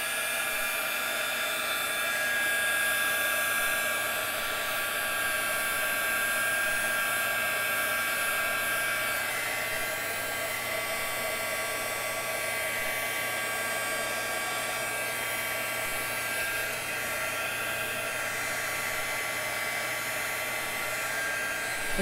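Embossing heat gun running steadily, its fan blowing hot air with a constant whine.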